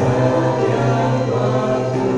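A small mixed group of male and female voices singing a Christian praise song in harmony into handheld microphones, holding long sustained notes.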